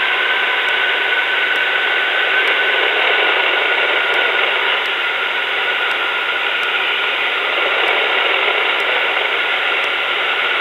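In-flight noise of a Revo weight-shift trike, its engine, propeller and wind, picked up through the cockpit intercom as a steady hiss with no highs. A faint tone in the noise drifts slowly lower.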